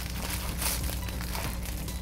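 Plastic bubble wrap crinkling and rustling as it is unwrapped by hand.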